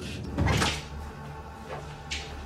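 A door opening or closing, with one short clunk about half a second in, followed by a low steady hum.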